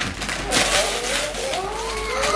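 Gift wrapping paper being torn and ripped open, a rough rustling noise starting about half a second in, with children's voices exclaiming underneath.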